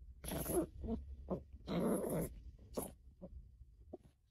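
Chihuahua play-growling in a series of short bursts, the two longest about half a second each, with shorter ones between and fading near the end.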